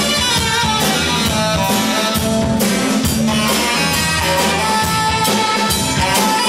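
Live rock band playing: a drum kit keeping a steady beat under electric guitars and other sustained instrument lines.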